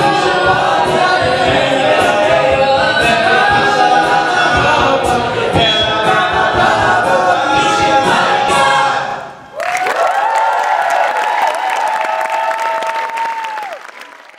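Mixed a cappella group singing in full harmony over a vocal-percussion beat, ending about nine seconds in. Audience applause and cheering follow, with one long high held voice carried over it before the sound fades out.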